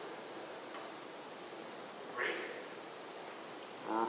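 Steady room hiss with a faint, distant voice calling out briefly about two seconds in, an audience member answering a question from the stage.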